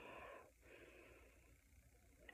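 Near silence, with faint breathing during the first half-second.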